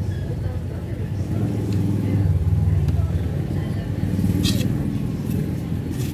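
Low, steady rumble of a motor vehicle engine running, loudest about two to three seconds in, with a brief sharp click about four and a half seconds in.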